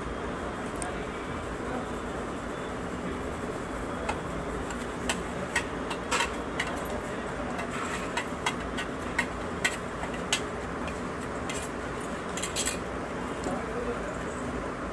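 A steel spoon scraping and clinking inside a stainless-steel mixer-grinder jar, scooping thick chutney out into a glass bowl. Irregular light clicks come scattered through the middle over a steady low hiss.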